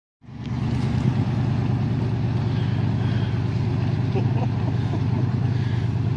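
Off-road vehicle's engine running steadily as it drives through deep water.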